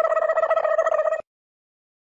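A steady buzzing tone with a fast flutter, lasting about a second and a half and cutting off suddenly; it is an added sound effect.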